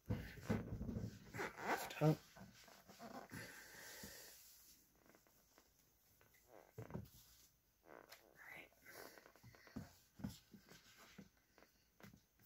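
Cardboard box and packaging handled as a laptop is unpacked: rustling and a sliding scrape in the first few seconds, then scattered light taps and knocks. A short voice-like sound about two seconds in is the loudest moment.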